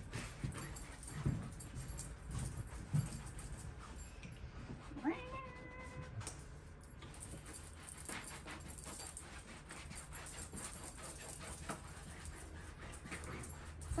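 Round wax brush scrubbing soft wax into a fabric chair seat: faint, quick scratchy strokes. About five seconds in comes a single short, high, rising vocal call, about a second long.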